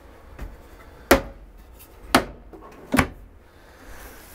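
Kitchen cabinet drawer and two cabinet doors being pushed shut: three sharp knocks, about a second apart.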